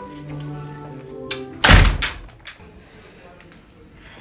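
A door shuts with one loud knock a little before halfway through, after a few notes of a short melody.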